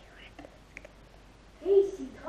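A young girl's voice: faint whispering with a few small clicks, then one short, loud vocal sound near the end.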